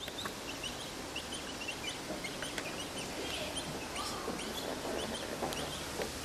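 Many short, high-pitched bird chirps, several a second, over a steady background hum of city and river noise.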